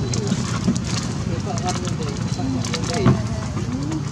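Indistinct voices in the background over a steady low hum, with scattered crackles of a plastic snack bag being handled by a baby macaque.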